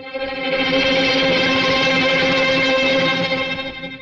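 Background film score: one loud sustained chord that swells in, holds steady, and fades away just before the end.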